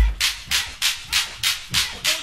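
Electro hip-hop drum-machine break with no rapping: a deep bass-drum hit at the start, then a steady run of sharp, noisy percussion hits about three a second.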